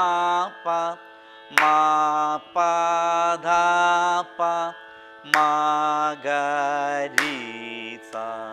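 Male Carnatic vocalist singing the swaras of a madhya sthayi varisai exercise in raga Mayamalavagowla: a string of held notes, each just under a second, with wavering ornaments, over a steady drone. A sharp clap marks three of the phrase starts.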